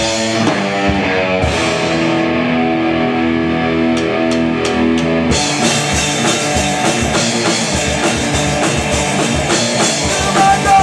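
Live rock band playing an instrumental passage: two distorted electric guitars and a drum kit. From about a second and a half in, the guitars hold ringing chords with lighter drumming, and at about five seconds the full kit comes back in.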